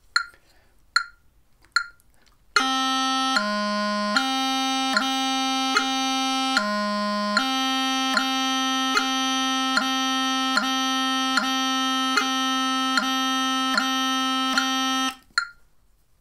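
Bagpipe practice chanter playing a held B broken by tapping grace notes down to low G, each tap landing on the click of a phone metronome at 75 beats a minute. The metronome clicks alone, a little over once a second, for the first couple of seconds before the chanter comes in, and the chanter stops shortly before the end.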